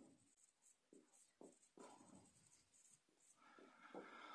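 Faint, short strokes of a marker writing on a whiteboard, a few scratches spread through an otherwise near-silent pause.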